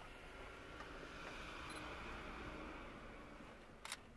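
Faint camera handling noise: a steady low hiss that swells a little in the middle, then one sharp click near the end.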